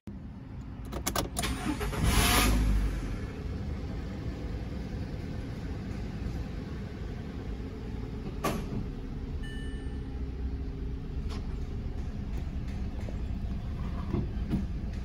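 Car engine started: a few clicks, then a loud surge about two seconds in as it catches, settling into a steady idle at about 1,000 rpm.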